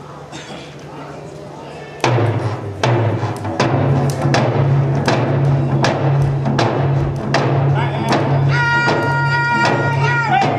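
A group of Ojibwe-style hand drums starts a steady, even beat about two seconds in, at roughly two to three strokes a second. Near the end a high voice comes in on a held note over the drumming, the opening of a powwow-style hand drum song.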